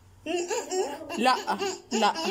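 Stifled laughter from a woman with her mouth full of water: short giggling bursts pushed through closed lips as she tries not to laugh and spill it.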